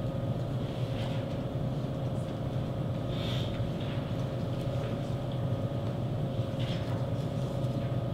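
Steady low room hum with a thin steady tone above it, and a few faint clicks and taps.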